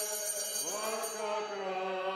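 Sung liturgical chant: voices holding long notes over a steady low drone, with one voice sliding up in pitch about half a second in.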